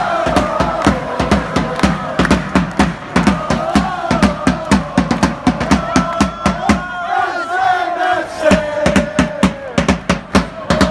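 A crowd of football supporters chanting a tune together, with a large marching bass drum beaten in a fast, steady rhythm under the singing.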